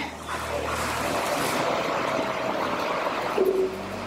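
A steady rushing noise with a low hum beneath it, holding an even level for nearly four seconds and then fading out.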